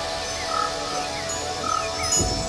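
Ambient electronic music: steady held synth tones with a short call repeating about once a second and faint falling chirps.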